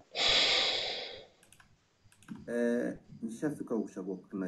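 A breathy rush of noise for about a second, then a few light clicks, then a man's voice making short wordless sounds.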